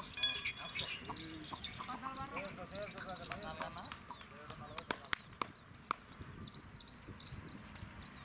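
Men's voices in the first half over continual, rapidly repeated chirping of small birds, with a few sharp clicks or knocks near the middle.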